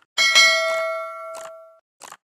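Bell-like 'ding' sound effect, with a quick double strike that rings out and fades over about a second and a half, preceded by a short click. A brief tick follows as it dies away.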